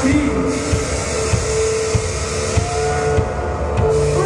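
Live band playing loudly through a PA: a drum kit beating about three times a second under a dense, sustained wall of keyboard and amplified sound holding one note.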